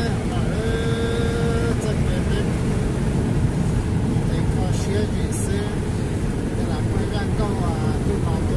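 Steady road and engine noise heard from inside a car cruising at highway speed, with voices talking faintly over it.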